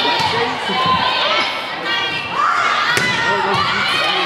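Volleyball rally in a gymnasium: several sharp hits of the ball, the sharpest about three seconds in, among high voices of players and spectators shouting and calling over crowd noise, echoing in the hall.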